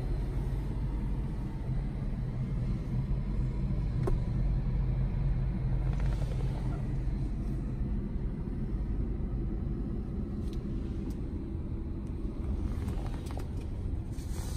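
Steady low rumble inside a car's cabin, with a few faint clicks scattered through it.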